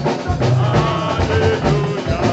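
Live band music, loud, with a drum kit keeping a steady beat under bass notes and other instruments.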